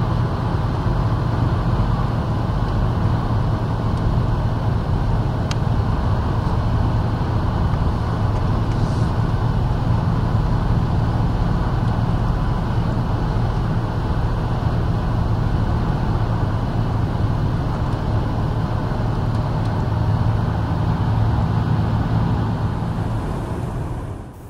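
Steady engine and road rumble heard from inside a car cruising at motorway speed, a low, even drone with a faint hum.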